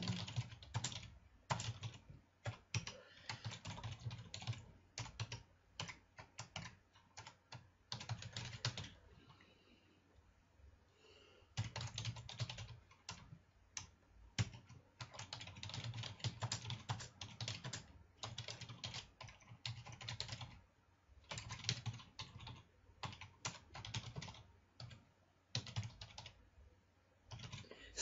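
Typing on a computer keyboard: runs of quick keystrokes broken by short pauses, with a longer lull of about two seconds a little before the middle.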